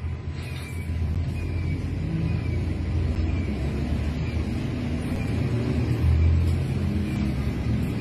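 Low, steady rumble of a vehicle engine with slow swells, with a short, high falling chirp repeating about once a second.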